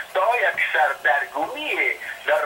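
Speech only: a man talking in Dari.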